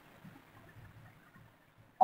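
Near silence: room tone with faint sounds of a marker writing on a board.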